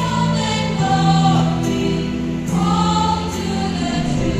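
A choir singing in several parts, with long held notes that change about every second.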